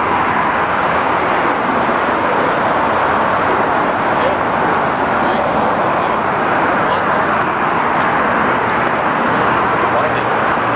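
Steady, even roar of outdoor background noise, with a few faint clicks about four and eight seconds in.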